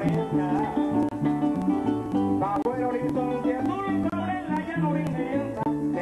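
Live Venezuelan llanero music: a man singing over a harp-led band with maracas, the bass notes stepping in a steady rhythm beneath plucked string melody.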